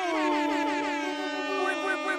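Several men imitating a trumpet fanfare with their mouths, in one loud, held horn-like tone that dips in pitch at the start and then holds steady.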